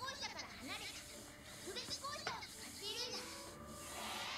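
Anime dialogue from the episode's soundtrack: high-pitched cartoon voices speaking in quick phrases.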